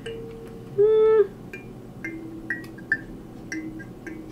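A small hand-held wooden instrument being tried out, still untuned: scattered short, high notes with clicks, one loud held tone about a second in, and a faint steady lower tone later on.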